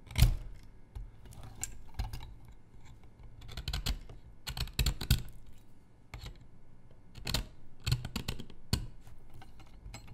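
Steel seal-carving knife cutting into a seal stone held in a carving clamp: irregular sharp clicks and short scratchy scrapes as the blade chips the stone, the loudest just after the start and others coming in small clusters.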